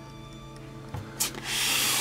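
Handling noise: a small click about a second in, then a loud rustling, rubbing hiss near the end as the camouflage-covered helmet is moved about close to the microphone.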